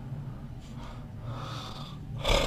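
A pause in a man's speech: a steady low hum of room and recording noise with a faint breath from the speaker.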